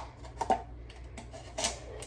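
Small scissors snipping through a red plastic Solo cup: a few sharp snips and crackles of stiff plastic, the loudest about half a second in.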